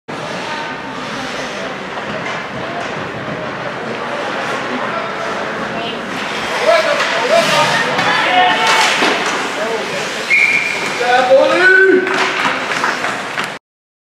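Steady background noise of an ice hockey rink, with voices calling out on the ice from about halfway through and a short whistle blast about ten seconds in; the sound cuts off abruptly just before the end.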